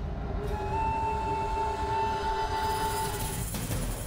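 Dramatic background score: a held, eerie horn-like chord of steady tones over a low rumble, breaking off about three and a half seconds in.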